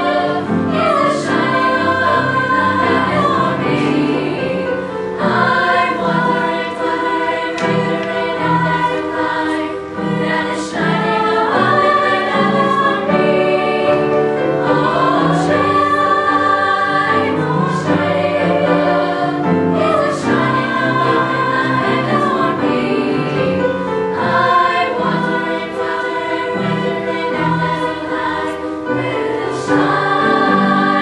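A school choir of boys and girls singing together in parts, holding chords that change every second or so.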